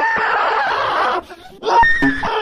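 Cartoon character screaming: a loud, shrill, strained cry that breaks off about a second in, followed shortly by a second outburst near the end.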